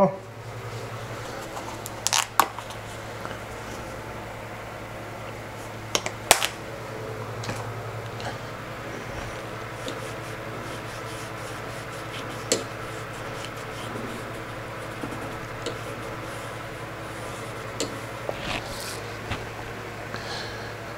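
Paper towel damp with alcohol rubbing over the inside surface of a Technics 1200 turntable's chassis, with a few sharp clicks and knocks from handling. A steady low hum runs underneath.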